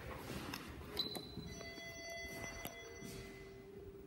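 A sharp click about a second in, then a steady electronic tone made of several pitches at once, held for about a second and a half before it stops.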